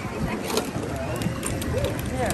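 Indistinct voices of people around an outdoor ropes course, with low rumble and a few short sharp clicks.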